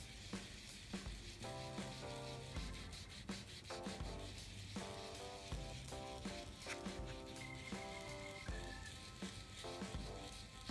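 Domed foam blending tool rubbing ink onto a paper page, a soft steady scratchy swishing, over gentle background music.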